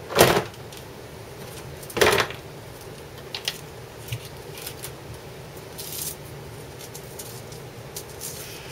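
Handling noise on a hard plastic tool case: two loud clunks about two seconds apart as the power tool and paint bottle are set into it, then a few light clicks and rustles.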